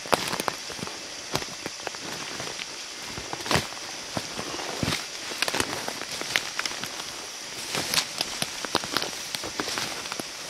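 Dry grass and brush rustling and crackling as people move and work in it, dotted with many irregular sharp clicks and snaps while a moose carcass is handled and skinned.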